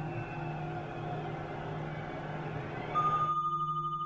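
Television sound of a rugby broadcast between commentary lines: a steady crowd noise from the stadium. About three seconds in it cuts off, and a single pulsing bell-like tone begins as the closing music starts.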